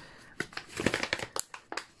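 Crinkling and rustling of a plastic toolkit pouch as small tools are slid back into it: a run of irregular crackles starting about half a second in.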